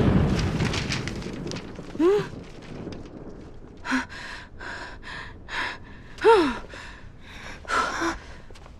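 A loud gust of wind dies away over the first two seconds. It is followed by a few short, breathy gasps and exhalations and two brief voiced exclamations.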